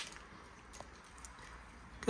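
Quiet room tone with a couple of faint, light clicks.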